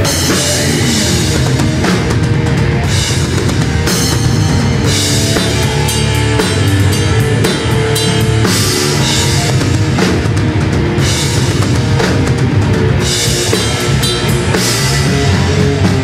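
Thrash/death metal band playing: drum kit with cymbal washes that come and go, over electric guitar.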